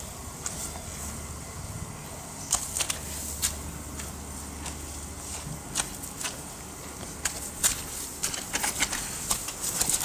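Irregular light clicks and rustles over a steady low hum, the clicks coming more often after the first couple of seconds.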